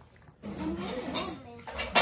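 A sharp clink of chopsticks against ceramic dishware near the end, with brief talk before it.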